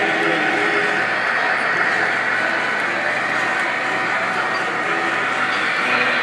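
Model trains running on a layout's track, a steady rolling clatter, mixed with the talk of a crowd of visitors.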